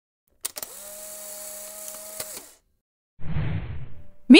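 Animated-intro sound effects: a click, then about two seconds of steady mechanical whirring with a couple more clicks that stops sharply. After a short gap comes a burst of rushing noise.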